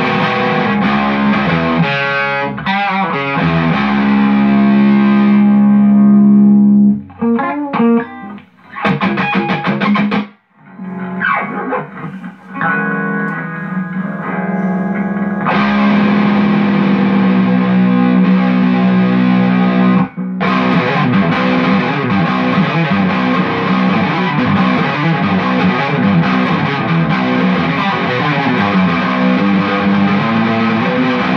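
Distorted electric guitar in drop B, its Seymour Duncan Nuclear Winter (Alnico 8 Black Winter) bridge pickup played through a Mesa Boogie F30 amp on a high-gain setting. Held chords at first, then a broken passage with a short silence about ten seconds in, then dense riffing from about halfway, with a brief stop shortly after.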